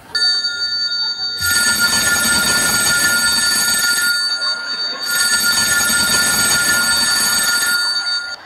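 Telephone ringing: two long rings with a short break between them, an incoming call.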